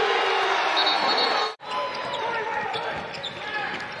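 Basketball arena crowd noise, louder in the first part, cut off abruptly about one and a half seconds in, then quieter arena sound with the sounds of play on the court.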